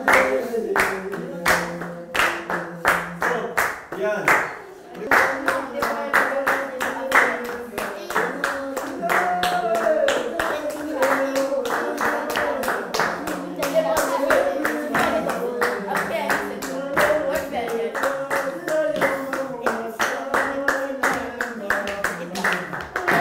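A group of children clapping a steady beat, a little over two claps a second, while singing a Rwandan traditional dance song to accompany a dancer. The clapping stops briefly about four seconds in, then picks up again.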